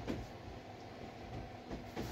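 Synthetic sportswear being handled and smoothed flat on a table: soft fabric rustling with a couple of light, muffled knocks, over a steady low background rumble.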